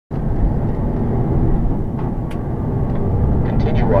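Steady low road and engine rumble of a car driving, heard from inside the cabin.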